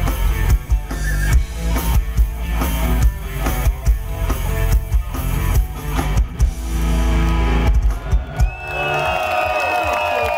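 Heavy metal band playing live, with drums and distorted electric guitars, heard from the audience. Near the end the song closes on a held chord and a few final hits, and the crowd starts cheering.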